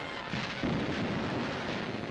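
A dense rumbling roar of heavy booms, swelling to its loudest about half a second in.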